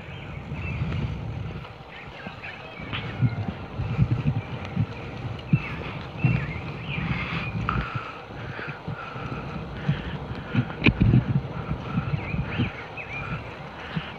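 Wind buffeting the microphone and tyre rumble from a bicycle riding on a wet paved road, with a few sharp knocks from bumps.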